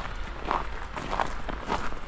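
Footsteps of a person walking on a snow-covered path, a step every half second or so, about three steps.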